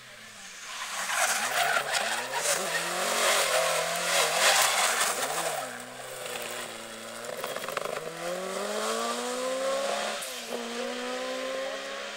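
Mk2 Ford Escort rally car sliding through a junction, its engine revving up and down over loud tyre squeal and skidding. It then accelerates away with a rising engine note, broken by a gear change near the end.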